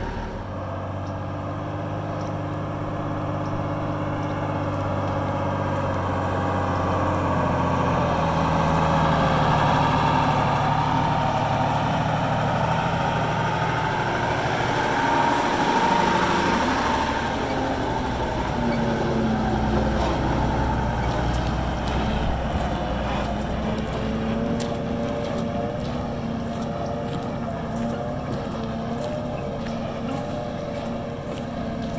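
Mercedes-Benz camper truck's diesel engine running under load as it pulls away up a steep dirt hill. The engine note rises in steps about a quarter of the way in, then settles.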